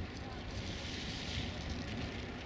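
A slow-moving train of passenger coaches rolling along the platform track, heard as a low rumble, with a hiss that swells about halfway through. Wind is buffeting the microphone.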